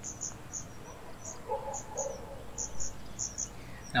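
Insects chirping, short high-pitched chirps often in pairs, about three a second.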